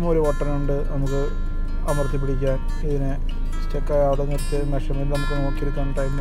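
A person talking in Malayalam over background music that plays throughout.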